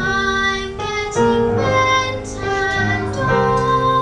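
A children's music group performing: young voices singing a melody of held notes over instrumental accompaniment.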